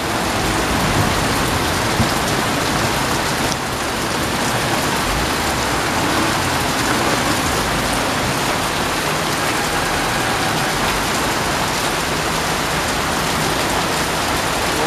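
Heavy rain pouring down steadily, a dense even hiss of rain hitting the road and surroundings.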